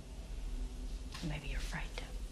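A soft, low voice speaks briefly a little over a second in, over a faint low hum.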